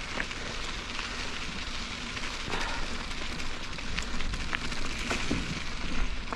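Mountain-bike tyres rolling over a dry dirt path: a steady crackling hiss with scattered small clicks, over a low rumble.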